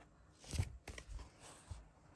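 Clear plastic binder sheet of baseball cards being turned: a short rustling crinkle of the plastic page about half a second in, then a few lighter clicks and rustles as it settles.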